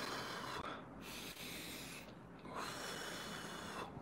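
A man breathing deeply and audibly as part of a respiratory exercise: three faint, hissing breaths in and out, the first at the start, the second about a second in, the third running from about two and a half seconds to near the end.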